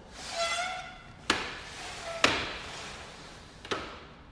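Vinyl-glazed porch window panels, aluminium sashes in plastic tracks, being slid down to close. A short squeaky slide comes first, then three sharp knocks, one every second or so, as the panels come to rest.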